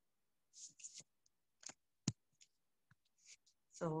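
Scattered small clicks and brief rustles from a phone camera being handled and repositioned, the sharpest click about two seconds in, with dead silence between them.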